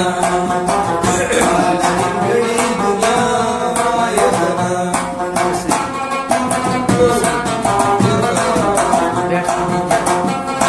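Rabab played in a Pashto folk tune, quick plucked notes over ringing strings, with mangi (clay pot) percussion keeping the rhythm.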